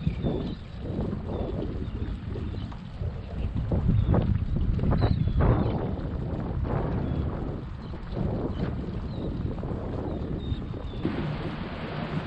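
Wind buffeting the microphone aboard a small boat drifting on open water, with water lapping at the hull; the rumble swells louder a few seconds in.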